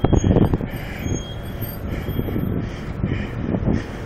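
Ford E-Series van pulling in close at the curb, its engine running with tyre noise over steady city street traffic.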